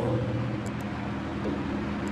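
A steady low hum over faint background noise, with no speech; the previous phrase fades out just at the start.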